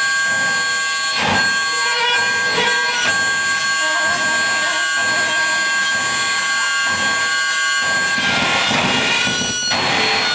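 Live electronic noise improvisation with a reed instrument: several steady high whistling tones are held over shifting noisy textures, with short noisy swells early on, and the sound thickens into a dense, harsher noise about eight seconds in.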